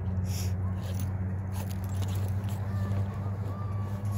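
A steady low hum under faint, distant shouts of players on the field.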